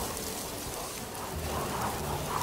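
A steady rain-like hiss spread evenly from low to high pitch, with faint low tones beneath it.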